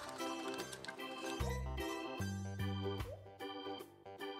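Background music: pitched instrumental notes over a bass line that changes in an even rhythm.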